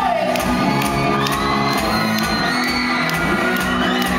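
Live pop-rock band playing loudly in a hall, with amplified electric guitars, a steady drum beat and a sung melody line that rises and is held, while the crowd shouts and cheers along.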